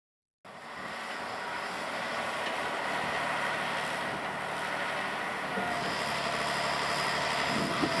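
Tatra 815 UDS-114 telescopic excavator running steadily while its boom and bucket dig, the diesel engine and hydraulics working under load; the sound cuts in about half a second in, and a high whine joins about six seconds in.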